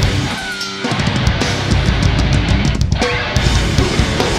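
Heavy metal band playing live: distorted electric guitars, bass and drum kit. A brief stop about half a second in, then the full band comes back with a run of rapid, even drum strikes, and there is another short break near the end.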